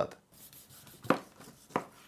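Kitchen knife slicing through a rack of oven-roasted pork ribs with a crisp crust on a cutting board: two short cuts, about a second in and just before the end.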